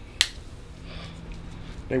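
A single sharp snap, like a finger snap, about a fifth of a second in, then quiet room sound until a man's voice starts at the very end.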